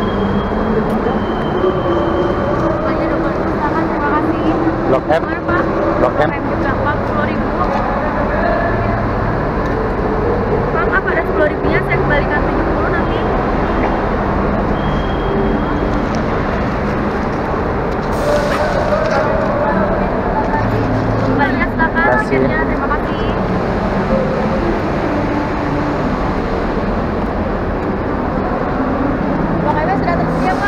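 Indistinct voices of several people talking at once, over a steady low background rumble.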